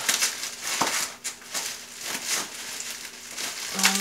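Packaging wrapping crinkling and rustling in irregular bursts as a photo print is unwrapped by hand.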